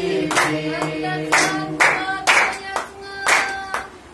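A group of voices singing a Christmas song together, with hand clapping keeping time at about two claps a second.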